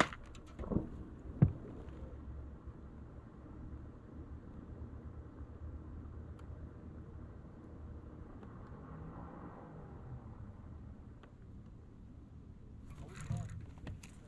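Quiet on-boat background: a low steady hum and rumble, with two sharp knocks of gear against the boat about a second in and a second and a half in.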